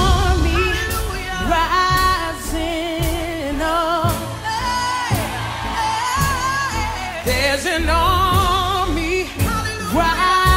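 Gospel song recording: a singer's long melismatic runs with vibrato and no clear words, over a band with steady bass and drums.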